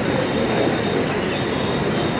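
Steady rushing background noise of an outdoor gathering, picked up through the speech microphone, with a faint steady high-pitched whine.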